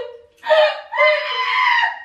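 A woman's high-pitched shrieks: a short one about half a second in, then a longer one held for about a second.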